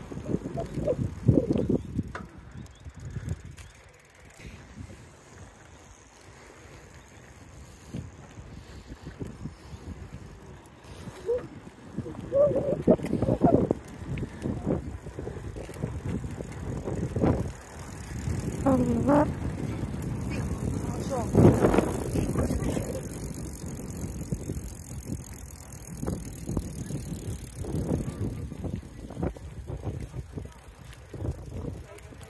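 Riding a bicycle on a paved path: wind rumbling on the microphone and the bike's rattle and tyre noise. A short voice-like call is heard about two-thirds of the way through.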